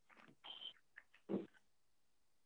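Faint, choppy fragments of a woman's voice through a microphone: a few short bursts with dead silence between them, one held briefly on a steady note.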